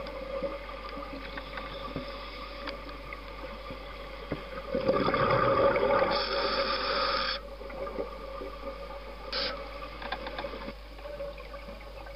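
Underwater ambience with a steady hum, and scuba exhaust bubbles rushing out of a regulator: one long burst of about two and a half seconds near the middle and a shorter one a couple of seconds later.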